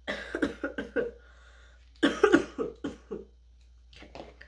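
A woman coughing in two fits, each a quick run of several coughs: one at the start and one about two seconds in. It is the cough of someone sick with a cold, with a stuffy nose and a sore throat.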